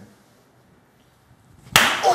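A single loud, sharp open-hand slap on a person's clothed backside, struck with a full swing. It comes about three-quarters of the way in, after a hushed pause.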